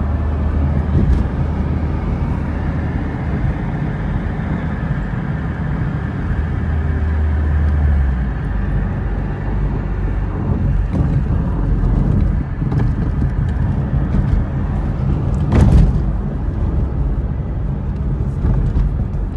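Steady low rumble of a car driving along a city street, heard from inside the cabin, with one louder rush near the end.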